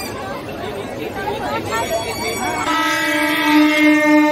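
A plastic toy horn is blown, sounding one steady held note from about two and a half seconds in, over crowd chatter.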